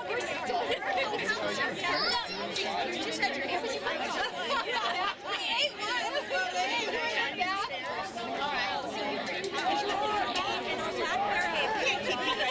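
Chatter of several spectators talking at once around the microphone, voices overlapping without a break.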